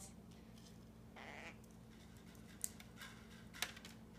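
Quiet feeding sounds from pet parrots: a brief soft raspy call about a second in, then two small sharp clicks near the end, as of beaks picking at food and food cups.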